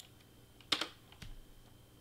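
A few isolated computer keyboard keystrokes, the clearest about three-quarters of a second in.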